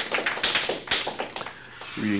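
Small audience applauding with dense hand claps that thin out and die away about a second and a half in.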